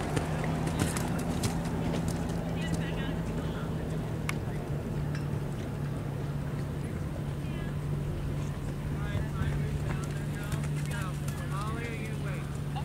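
Horses' hoofbeats on a sand arena under a steady low engine hum, with indistinct voices in the background.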